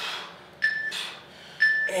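Interval timer's countdown beeps: two short, high, identical beeps about a second apart, marking the last seconds of a work interval.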